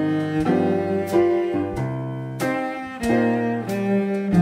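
Cello and piano playing a swing-style tune together: the cello bows sustained melody notes over piano chords, with several note changes.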